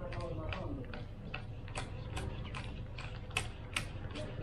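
A wad of paper banknotes being counted by hand, each note flicked past with a crisp snap, about two or three snaps a second. The last two snaps are the loudest.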